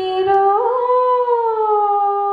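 Background music: a woman's voice holds one long sung note in a devotional song about Rama, lifting with a small waver about half a second in, then easing down and holding steady.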